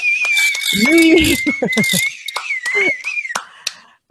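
A person clapping hands in celebration, with a short burst of cheering or laughing voice about a second in, over a steady high tone that stops a little after three seconds.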